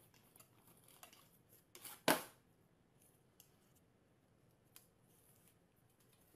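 Cardboard box rustling and crackling as a dog noses and paws inside it on a glass tabletop, with one short, loud scrape or rip about two seconds in.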